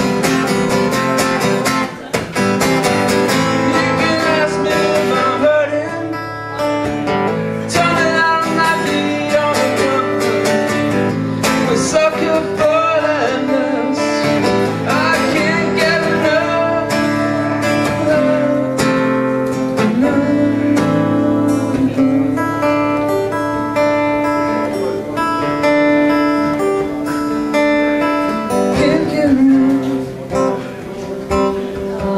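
Acoustic guitar being strummed in a live song, with a man singing over it.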